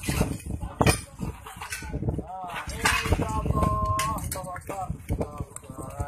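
Voices calling out in long, drawn-out tones around the middle, with sharp knocks and clinks of broken masonry and debris being handled.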